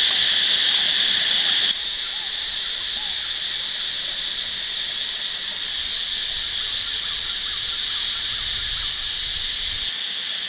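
Steady, shrill chorus of forest insects, dropping a step in loudness about two seconds in.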